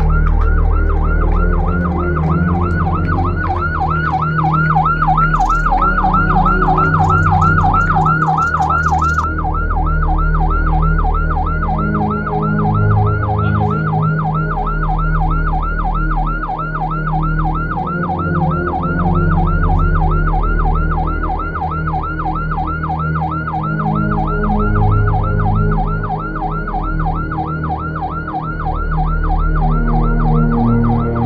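An escort siren sounding a fast, steady yelp, rising and falling about three times a second, over low sustained notes.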